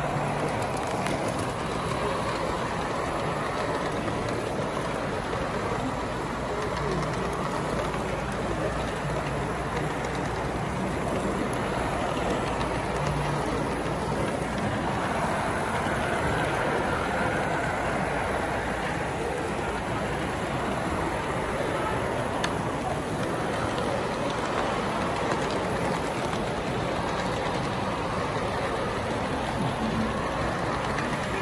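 S gauge model trains running on a show layout: a steady rumble of wheels on the track under the constant murmur of a crowded exhibition hall.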